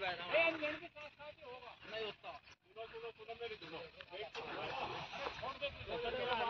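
Faint voices of men talking, with no tractor engine running: the engine has stalled.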